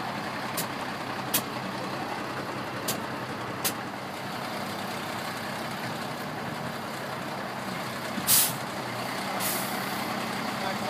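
A fire engine's diesel engine idling steadily, with a few sharp clicks in the first four seconds. About eight seconds in comes a short, loud hiss, with a weaker one a second later.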